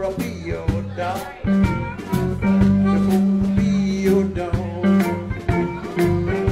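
Live blues band playing an instrumental section: an amplified blues harmonica (harp), cupped against a vocal microphone, leads with bending, wavering notes over electric guitars, electric bass and a drum kit.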